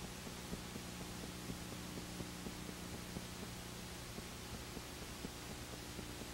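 Blank videotape playback noise: a steady low hum and hiss, with faint regular ticks about three a second.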